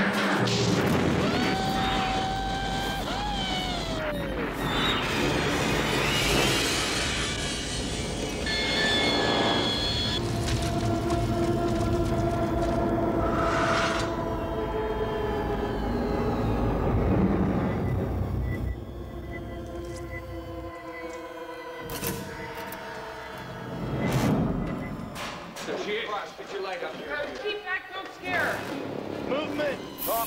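Film-trailer soundtrack: dramatic music mixed with booms and impact effects, with indistinct voices. After about 19 s it drops lower, broken by sharp cracks and a brief swell.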